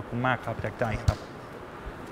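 A man's speech trails off, then a single sharp thump about a second in, followed by quiet room tone.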